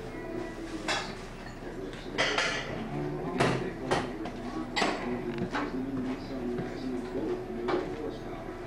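Dishes and cutlery clinking and clattering in a string of sharp, irregular clinks, over indistinct background chatter.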